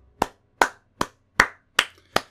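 One person clapping slowly and evenly, about five claps spaced a little under half a second apart.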